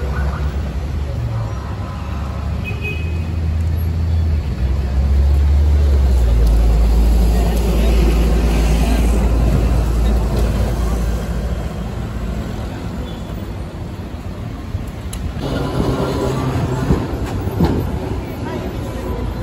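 City street traffic: the low engine rumble of a heavy vehicle swells, is loudest midway, then dies away, under a background of street noise and passers-by's voices.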